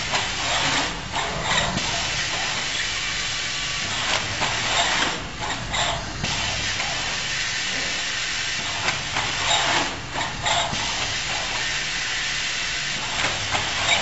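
Automated pick-and-place packing line running: a steady machine hiss, with louder spells of air hiss every four to five seconds as the robot's suction-cup gripper picks up and releases pouches.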